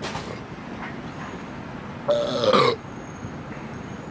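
A man burps once, loudly, for about half a second roughly two seconds in, after gulping malt liquor from a 40-ounce bottle.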